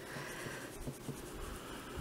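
Faint rubbing and small handling sounds of fingers smoothing and pressing wet epoxy sculpting clay onto a plastic model horse's neck.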